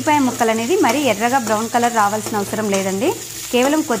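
A steel spoon stirs onions and green chillies frying in oil in a non-stick kadai. The spoon scrapes the pan in quick repeated strokes, squeaking up and down in pitch over a light sizzle.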